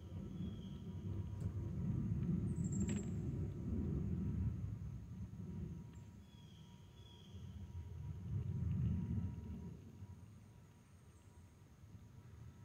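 A low rumble that swells and fades twice, with a single sharp click about three seconds in.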